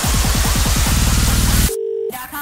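Bass-boosted electronic dance track: a fast, quickening run of heavy bass-drum hits builds up, then about 1.7 s in the music cuts out suddenly, leaving one steady held tone.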